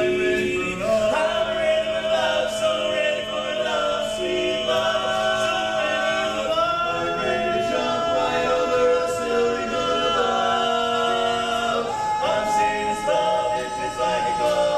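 Male barbershop quartet singing a cappella in four-part close harmony, holding sustained chords that shift every second or so, with a high held note entering near the end.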